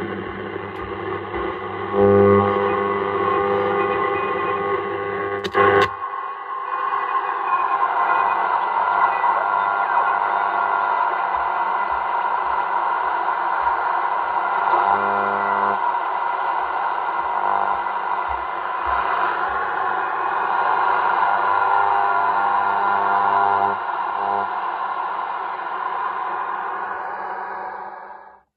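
Sailor 66T marine shortwave receiver's loudspeaker output while being tuned across the 80-metre band: band-limited radio noise with several steady tones and distorted signals. A sharp click comes about six seconds in, and the sound changes after it.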